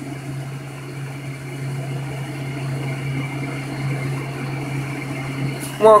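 Several fidget spinners spinning freely on a hard tile floor, making a steady low whirring hum.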